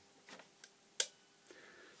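Quiet room tone broken by a single sharp click about a second in, with a couple of much fainter ticks before it.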